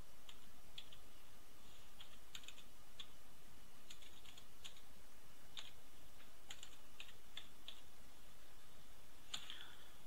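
Computer keyboard keystrokes as a user ID is typed: a dozen or so short clicks at an irregular pace, some in quick pairs, the strongest near the end.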